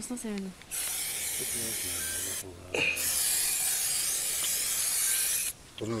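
Aerosol spray can hissing in two long bursts, with a short break between them, as it sprays the wound on a snared bear's leg.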